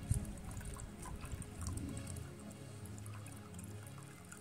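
Water poured in a thin trickle from a clear plastic jar into a graduated plastic mixing cup, filling it toward the 450 ml mark. Faint music underneath.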